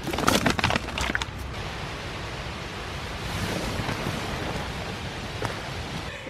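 Crackling rustle of tent fabric and bedding in the first second and a half as the camera is moved about inside a small tent, then a steady hiss.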